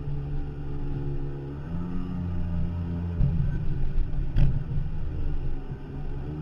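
A 14-foot Firefish Snapper jet boat's engine runs steadily and rises in pitch about two seconds in as it speeds up. Rougher knocking follows from water on the hull, with one sharp crack a little past the midpoint.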